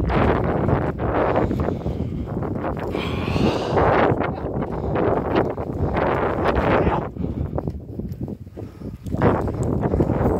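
Wind buffeting a phone's microphone, with footsteps on a wooden boardwalk. A brief high call comes about three seconds in, and the wind drops off for a couple of seconds near the end.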